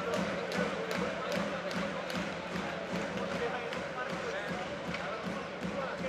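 Ice hockey arena crowd with fans beating a drum at a steady pace, about two and a half beats a second, over a background of voices.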